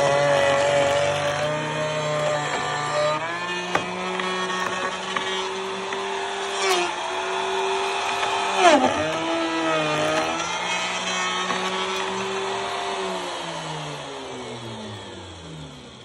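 Handheld plunge router running at full speed as it cuts the profile into a wooden guitar neck, its pitch dipping sharply about three times as the bit bites into the wood. Near the end it winds down, its pitch and loudness falling away.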